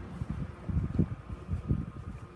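Irregular low rumbling and bumps on a handheld phone's microphone while it is carried outdoors, typical of wind and handling noise.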